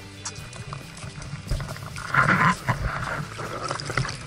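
Background music with steady held tones fades out. From about two seconds in, water sloshes and splashes around a camera held at the surface, loudest just after two seconds.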